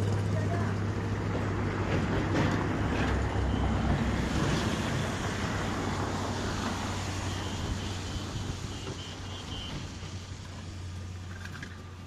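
A motor vehicle engine running with a steady low hum and broad noise, slowly growing fainter.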